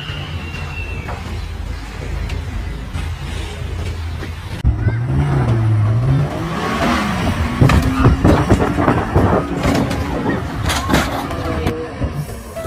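Steady road noise heard from inside a moving car. It breaks off about four and a half seconds in for an off-road vehicle's engine revving hard on a steep dirt climb, its pitch wavering. From about seven seconds in a rapid run of knocks and crashes follows as the vehicle slides and tumbles down the slope.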